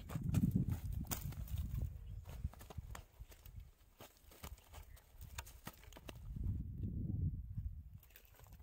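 A landed rohu fish flapping on dry, hard ground, making a quick, irregular run of slaps and knocks. Low rumbling noise comes at the start and again near the end.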